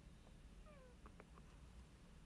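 Near silence: quiet room tone, with one faint, short falling cry a little past a quarter of the way in and a few faint ticks around the middle.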